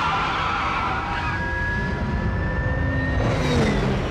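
Sound-effect engine of a futuristic car accelerating away, with a thin whine that slowly climbs in pitch over the engine noise and a rush of noise near the end.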